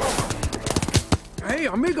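Tap-dancing penguin feet clicking on ice: a quick run of about a dozen taps in the first second. After that, an excited voice calls out with pitch swooping up and down.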